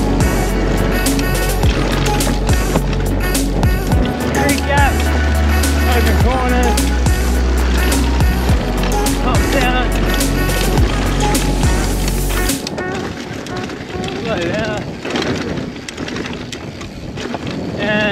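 Music with a heavy bass line laid over the rattle, knocks and tyre noise of a Scott Ransom eRide e-mountain bike riding fast over grass and dirt trail. The music cuts off suddenly about twelve and a half seconds in, leaving the bike's tyre and rattle noise.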